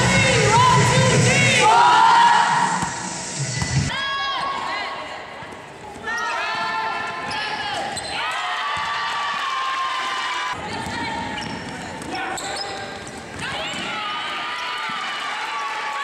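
Live basketball game sound in a gym: the ball bouncing, many short high-pitched sneaker squeaks on the court and players' voices, in several short clips cut together.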